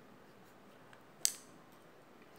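A single short, sharp click about a second in, against otherwise near-silent room tone.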